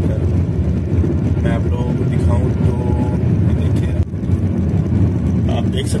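Steady low road and engine rumble inside a Hyundai i20's cabin while it cruises on an expressway.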